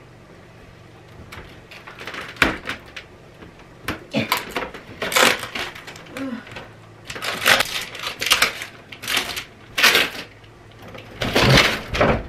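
A window air-conditioner unit being worked loose and pulled out of its window frame: a series of short plastic rattles, scrapes and clunks, the loudest near the end as the unit tilts out.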